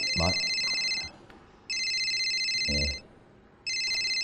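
A telephone ringing with an electronic ring: three steady, high rings, each just over a second long and about two seconds apart, an incoming call.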